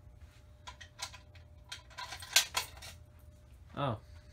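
A series of short, sharp metallic clicks and rattles, densest about two seconds in, with no alarm horn sounding.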